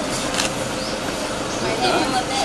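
Indistinct voices of people in a room over a steady rushing background noise, with a brief click about half a second in.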